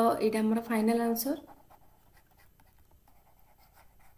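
A woman speaks briefly. Then comes faint, scattered scratching of a stylus writing on a tablet.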